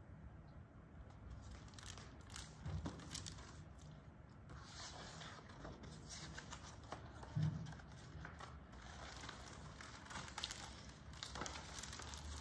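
Faint paper rustling and scraping as the pages of a large picture book are turned and handled, with a couple of soft bumps.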